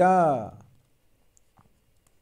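A man's spoken word trails off in the first half second, then near quiet with a few faint clicks, a stylus writing on a pen tablet.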